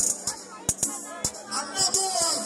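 Live music over a sound system: a drum beat with a bright shaker-like rattle on top, and a performer's voice over the microphone that drops back briefly and returns near the end.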